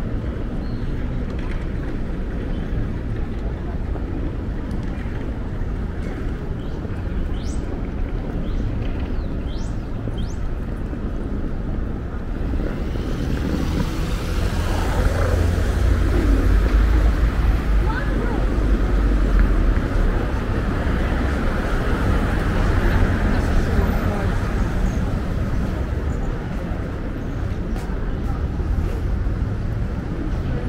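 City street sound: steady traffic noise that swells about halfway through as vehicles pass, with passersby talking close by during the louder part.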